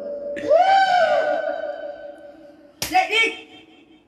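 An elderly woman wailing in a drawn-out, chant-like lament: a long held note fades out while her voice rises and falls in a crying call. Near the three-second mark there is a sharp smack, a hand slapping the back of the person lying beside her, followed by a brief vocal sound.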